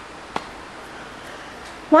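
Faint steady room hiss with one short, sharp click about a third of a second in. A woman's voice starts right at the end.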